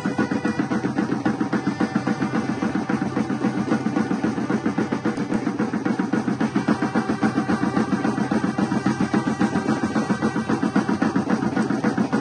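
Music led by drums beating a fast, steady rhythm.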